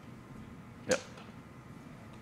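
Low room tone with one short spoken "yep" about a second in.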